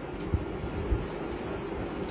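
Steady low background rumble with two brief soft low thumps, about a third of a second and about a second in.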